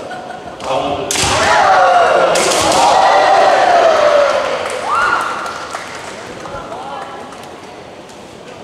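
Kendo fencers shouting kiai during an attack: one long wavering shout, then a shorter rising one about five seconds in. Two sharp impacts from the exchange land about one and two and a half seconds in.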